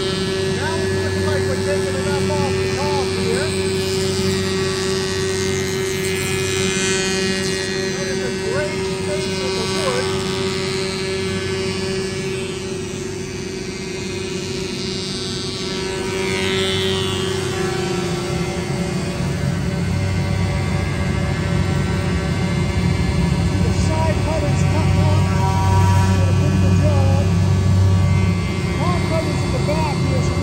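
Woodmizer MP360 four-side planer running, a steady multi-tone motor hum and whine, as pine boards feed through its cutterheads. One steady tone fades out about two-thirds of the way through, and the machine grows louder near the end.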